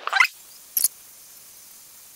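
Small handling sounds of a mascara tube and wand: a brief scrape at the start, then one sharp click about a second in, over faint steady room hiss.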